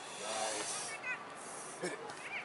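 Outdoor ambience at a soccer field: a steady hiss with faint, distant voices calling out briefly twice.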